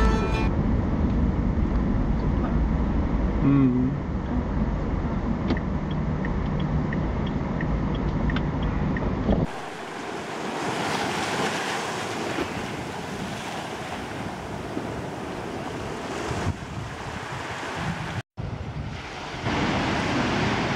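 Road and engine rumble inside a moving car, with a light ticking about twice a second for a few seconds midway. About halfway through it changes suddenly to wind rushing over the microphone, and near the end, after a brief dropout, to ocean surf breaking.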